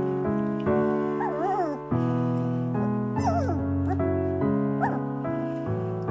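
A very young Golden Retriever–Flat-Coated Retriever cross puppy whimpering in short, wavering, rising-and-falling squeaks, three times, over background piano music.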